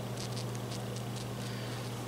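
Faint, irregular crackling and popping from a burst, leaking watermelon, its split rind fizzing in a way that sounds like an electrical fault, over a steady low hum.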